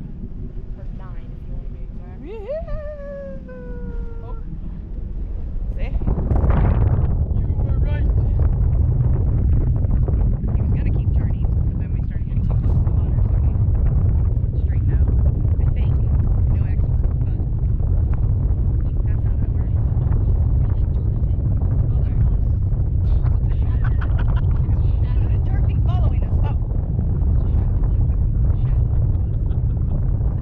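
Wind buffeting the microphone of a camera mounted on a parasail tow bar, growing much louder about six seconds in and staying strong. About two seconds in, a person's drawn-out voice slides down in pitch.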